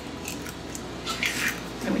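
A raw egg being cracked open by hand over a glass bowl of ground meat, with a few short crackles of eggshell.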